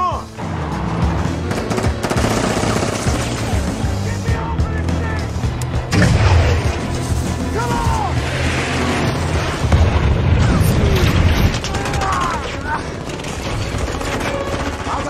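Action-film soundtrack mix: a loud, driving music score layered with bursts of gunfire, impacts and vehicle engine noise.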